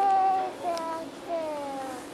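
A young child singing wordlessly in three drawn-out notes, the first the loudest and the last gliding down in pitch.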